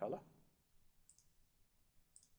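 A computer mouse button clicking once, a short, quiet click about a second in.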